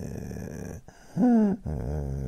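A man making pretend snoring sounds: a low buzzing snore, a short, louder vocal sound falling slightly in pitch, then another low buzzing snore.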